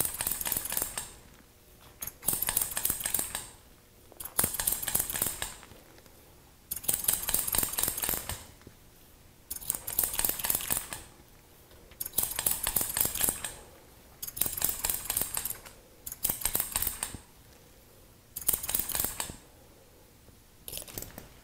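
Hair-cutting scissors snipping through hair over a comb: about nine runs of quick snips, each a second or so long, with short pauses between.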